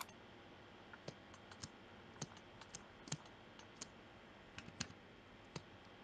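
Faint, irregular clicks of a computer mouse and keyboard, about a dozen over a few seconds, over a quiet background hiss.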